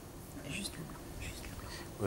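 A quiet pause in a conversation: faint whispered speech over low room tone, with a couple of brief murmurs.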